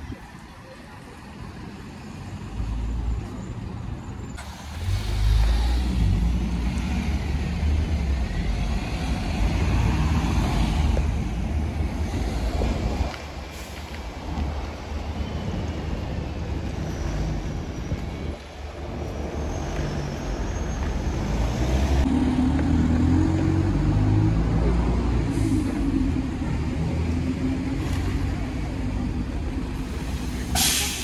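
Town street traffic: buses and cars passing, their diesel engines a low, continuous rumble that grows louder about five seconds in.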